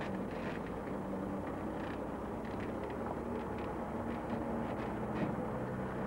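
DAF 2800 lorry's diesel engine running steadily at low revs as the tractor unit slowly hauls a heavily laden low-loader trailer round a tight turn.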